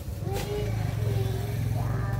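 A motor engine running steadily, swelling about a quarter second in, with a voice faintly over it.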